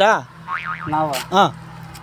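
A man's voice speaking in short, exaggerated sing-song phrases that swoop up and down in pitch, with a brief sharp click just past halfway.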